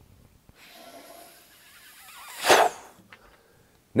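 A man blowing hard into the air vent hole of a drum shell: a breathy hiss that builds to one strong whoosh about two and a half seconds in, then stops. The air pressure inside the shell pushes the old coated head outward off the bearing edge so that it reseats and its loose lugs show up.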